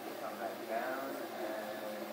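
MakerBot 3D printer running mid-print, its stepper motors giving a steady hum with shifting tones as the print head moves.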